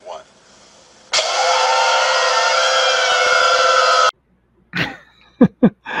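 A loud, harsh burst of noise laced with many steady tones. It starts abruptly about a second in, holds for about three seconds, and cuts off suddenly.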